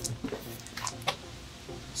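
Quiet handling noise: a few faint, light clicks and scuffs, about four in two seconds.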